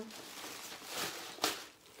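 Tissue paper and plastic packaging rustling and crinkling as they are handled, with one sharper crackle about one and a half seconds in.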